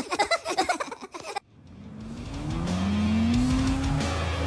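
Cartoon characters laughing for about the first second and a half, then a brief drop-off before an Audi Q7's engine fades in and revs, its pitch rising, over music.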